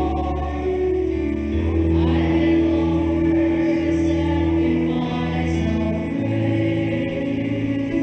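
Church music for the responsorial psalm: singing over held chords, with a low bass note that changes about every two seconds.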